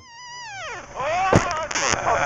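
Onboard sound of a rally car losing control at high speed: the engine note falls steeply, then a hard impact about a second and a half in as the car hits a tree, followed by crashing noise.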